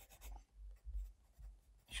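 Pencil scratching on sketchbook paper as a signature is written: a few faint, short strokes.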